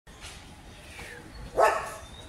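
A dog barks once, loud and short, about a second and a half in.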